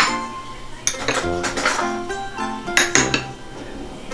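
Metal spoons clinking against ceramic bowls as they are set into them, several separate clinks, over background music.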